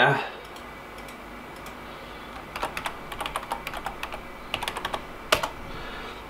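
Computer keyboard being typed on: a quick run of key clicks starting about two and a half seconds in, ending with one louder click.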